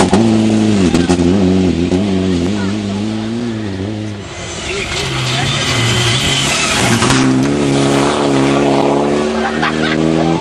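Rally car engine under hard acceleration on a gravel stage, its pitch rising and falling as it changes gear. From about four seconds in the engine tone gives way to a rushing noise for a few seconds, then a car's engine comes back in at a steadier pitch.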